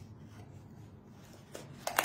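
Faint rubbing of a rubber balloon being worked over the rim of a styrofoam cup, with a few small sharp clicks near the end, the last one loudest.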